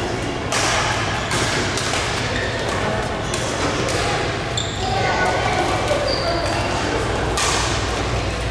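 Badminton rally in a large hall: a string of sharp racket strikes on the shuttlecock, with brief high shoe squeaks on the court floor, over a steady low hum of the hall.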